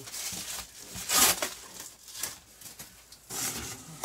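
Packing tape being ripped off a cardboard box and the cardboard flaps pulled open: several short rasping rips and scrapes, the loudest about a second in.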